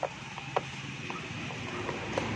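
Several small, light plastic clicks and handling noises as a plug-in aftermarket ECU module and its wiring connector are worked loose and pulled out by hand.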